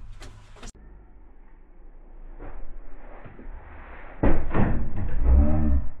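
Clunking and rattling of a van bench seat as it is yanked and wrestled against its floor clips, loudest in the last couple of seconds, with a strained grunt near the end.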